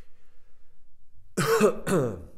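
A man clearing his throat, two quick loud bursts about one and a half seconds in, after a short quiet pause.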